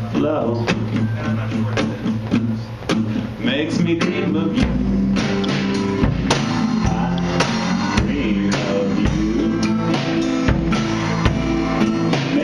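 A two-piece rock band playing live: a guitar with a drum kit keeping a steady beat on snare and cymbal. About four and a half seconds in, bass drum kicks join and the sound fills out.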